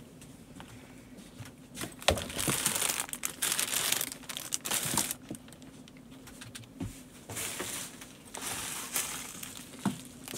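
Plastic shipping mailers and packaging crinkling and rustling as they are handled, in bursts starting about two seconds in and again later on, with a few light knocks.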